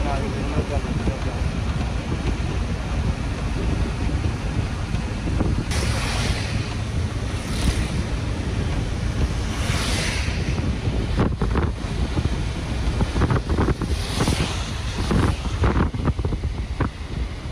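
Road noise inside a moving car on a wet road: a steady low rumble of tyres and wind, with a rushing hiss that swells a few times, about six, ten and fourteen seconds in.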